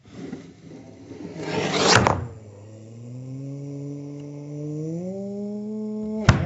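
Slowed-down voice: a scraping rustle builds to a peak about two seconds in, then a long, deep, drawn-out vowel whose pitch slowly rises.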